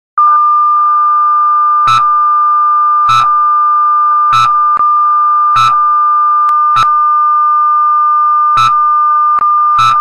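Broadcast test-card tone: a loud, steady high-pitched tone, with a short click about every second and a bit, seven or so in all.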